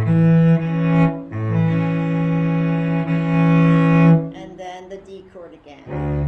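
Cello bowing an A chord as a double stop: two low notes held together in long sustained bow strokes, with a bow change about a second in, fading out a little after four seconds.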